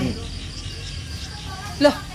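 Crickets chirring steadily in the background, a faint high even sound under the room noise.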